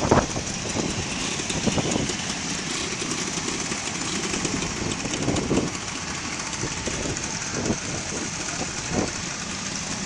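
Several motor scooters and motorcycles running at low speed as they ride slowly past, a steady engine din with a few short louder bursts.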